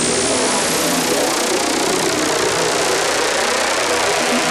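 Synthesizer noise sweep in an electronic track: a dense rushing hiss rising in pitch and levelling off about a second in, over low sustained tones.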